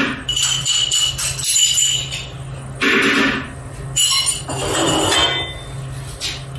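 A spoon clinking and scraping against a small ceramic dish, giving bright ringing clinks in two spells: through the first two seconds and again about four to five seconds in. A steady low hum runs underneath.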